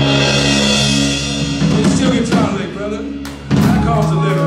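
Live band of electric guitars, bass and drum kit holding a sustained chord. About one and a half seconds in, the chord drops away and the drums and cymbals take over with a run of separate hits. This is typical of a song's closing flourish.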